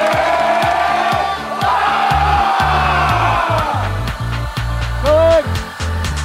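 A group of boys shouting together, a team cheer from a soccer huddle, over background music with a steady beat. The voices fade after about three seconds, the music's bass grows heavier, and one short shout comes near the end.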